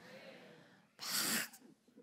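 A woman's breath into a handheld microphone: a faint breath, then a short, sharp rush of breath about a second in.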